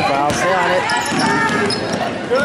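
A basketball being dribbled on a hardwood gym floor, with voices calling out in the hall.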